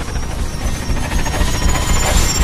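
Lawn mower running with a fast, rattling pulse and a low rumble, while a thin high whine rises slowly.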